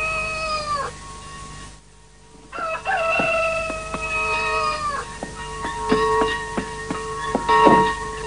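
Rooster crowing twice: the end of one crow just under a second in, then after a short pause a second crow with a long held final note. Music with plucked notes follows over the last few seconds.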